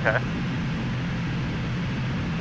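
Steady drone inside the cockpit of an Aero Vodochody L-39 Albatros in flight: its turbofan engine and the airflow make an even, unchanging hum.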